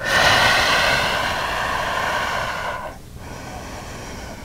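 A person's long, audible breath out, starting sharply and fading away after about three seconds, followed by quieter breathing.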